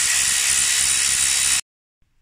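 Milwaukee Fuel cordless electric ratchet running, spinning out a bolt on the cover over a dual-clutch gearbox's mechatronics unit: one steady whir for about a second and a half that stops suddenly.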